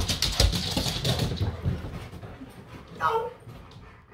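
Siberian huskies scrambling about, with quick clicks and clatter of claws on a hard floor in the first second or so. About three seconds in, a husky gives a short whine.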